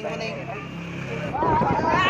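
People's voices: faint talk over a low steady hum, then a loud drawn-out shout starting about one and a half seconds in.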